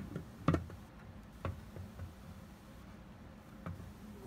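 Clear plastic vacuum desiccator lid being seated on its base: a sharp plastic knock at the start and a louder one about half a second in, then a few lighter clicks.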